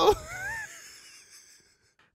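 A man's short laugh, a high rising squeak in the first half second, trailing off into near silence.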